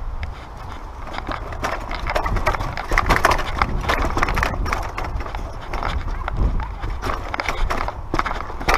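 Mountain bike riding over rough rock: a quick, irregular run of clicks and knocks from the bike rattling as the tyres hit the rock, over a low rumble.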